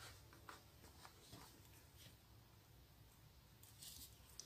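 Near silence, with a few faint ticks and rustles from hand-sewing: needle and thread drawn through fabric.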